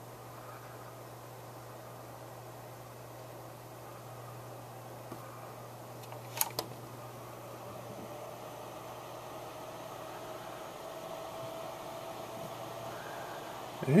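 Nismile oscillating desk tower fan running at a raised speed setting: a steady whir of air with a low hum, gradually getting a little louder. One sharp click about six seconds in.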